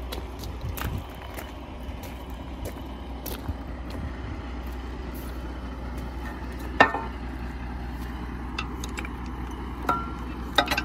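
A vehicle engine idling steadily under light footsteps on gravel, with one sharp metal clink about two-thirds of the way through.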